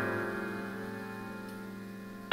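Music: a held piano chord of several notes slowly dying away, with no new notes played.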